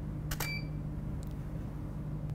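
DSLR shutter firing once, a quick double click, as a test shot triggers the studio flash, followed at once by a short high beep from the Profoto D2 flash head signalling it has recycled.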